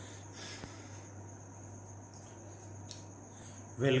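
Steady background of a thin high-pitched tone and a low hum, with a couple of faint clicks; a man's voice begins just at the end.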